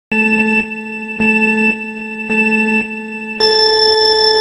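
Electronic countdown beeps: three low beeps about a second apart, then one longer beep an octave higher, like a race-start signal.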